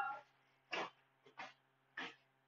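A pause in a man's spoken monologue: a word trails off at the start, then three faint, short mouth or breath-like sounds over a steady low electrical hum.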